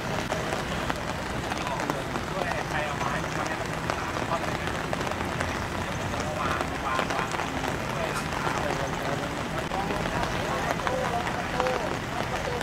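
Indistinct voices of several people talking at a distance over a steady wash of outdoor noise, with no clear words.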